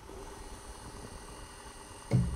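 Tandberg Model 11 full-track mono reel-to-reel tape recorder running in playback at 19 cm/s: a quiet, steady tape hiss with faint steady hum tones from the transport and playback.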